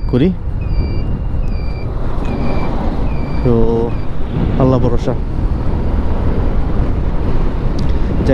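TVS Stryker 125cc single-cylinder motorcycle running at road speed, its engine and wind noise steady and loud, with a rhythm of short high beeps about every 0.8 s in the first few seconds.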